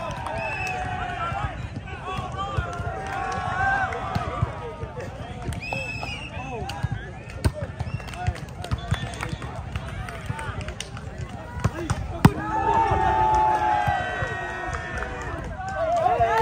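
Volleyball players and onlookers calling out and shouting during a grass volleyball rally, with sharp smacks of hands hitting the ball. The loudest smack comes about twelve seconds in and is followed by a burst of shouting.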